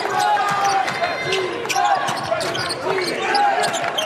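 Court sound of a college basketball game in an arena: a basketball dribbled on the hardwood floor, with short sneaker squeaks and voices over a steady crowd background.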